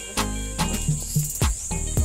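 Steady high-pitched insect chorus shrilling without a break, with several footsteps scuffing on concrete and gravel.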